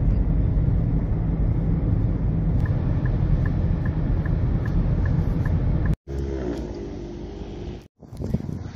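Car cabin rumble of a car driving slowly through a parking lot, with the turn-signal indicator ticking about three times a second for a few seconds midway. About six seconds in, the sound cuts to a quieter stretch with a short pitched sound.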